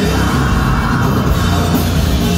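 Industrial metal band playing live, heard from within the crowd: a loud, dense wall of heavy music with a steady level throughout.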